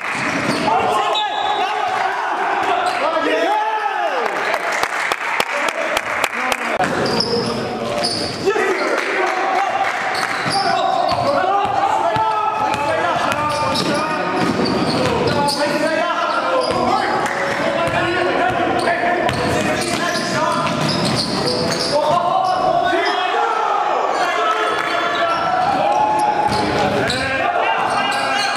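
A basketball dribbled on a hardwood gym floor, with players' voices and shouts echoing in a large hall. The bounces come as sharp, repeated knocks through the first several seconds, then the voices carry on.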